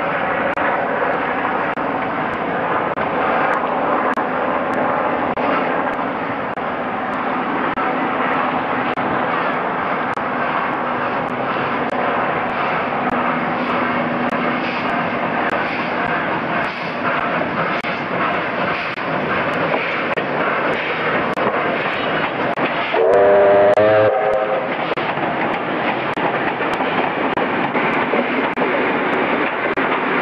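Victorian Railways R class steam locomotive running with its train, a steady loud mix of exhaust and running noise. About five seconds before the end its steam whistle sounds once for about a second, rising briefly in pitch before it holds.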